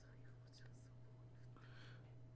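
Near silence: a steady low electrical hum, with faint hissy, whisper-like sounds about half a second in and again near the end.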